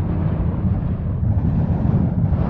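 Deep, steady rumble with a hissing roar above it, the dark sound design of an electronic album trailer.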